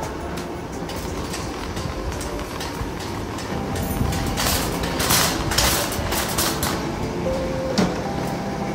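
Empty wire shopping cart being pushed over a concrete floor, its wheels and metal basket rattling steadily, with louder clattering from about halfway through.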